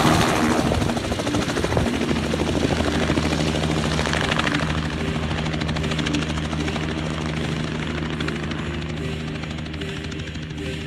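Battery-electric Robinson R44 helicopter flying low and moving away: a steady rotor beat with a low hum, slowly fading as it goes.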